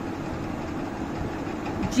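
Steady low background hum.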